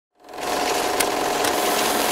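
A dense, whirring mechanical noise with a steady tone through it and two sharp clicks about half a second apart. It fades in quickly at the start.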